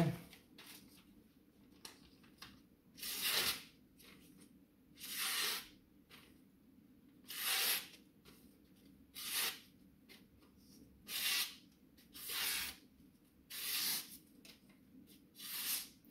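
Kitchen knife slicing through a held-up glossy magazine page in about eight separate strokes a second or two apart, each a short papery hiss. It is a cutting test of an edge fresh off a 1000-grit water stone.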